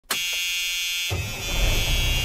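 A steady buzzing tone that starts suddenly; about a second in, a deeper rumble and hiss join it.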